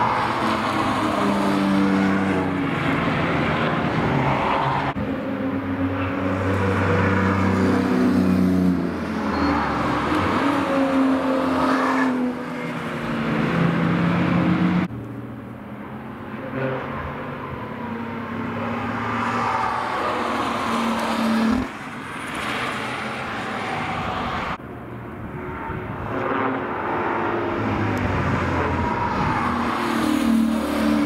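Sports cars driving past one after another through a track corner, their engines braking down and accelerating back up so the pitch falls and rises. The sound changes abruptly every several seconds as one car gives way to the next. The first car is a BMW M2 with a straight-six, and a later one is a BMW 1 Series hot hatch.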